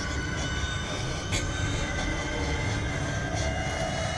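Horror-film sound design drone: a dense low rumble under several sustained high screeching tones, with one sharp hit about a second and a half in.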